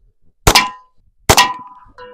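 Two shots from a SIG Sauer P322 .22 pistol, a little under a second apart, each a sharp crack followed by a brief metallic ring that dies away.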